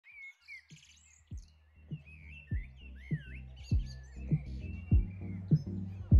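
Birds chirping over background music with a steady drum beat, about one hit every 0.6 seconds, that fades in about a second in and grows louder.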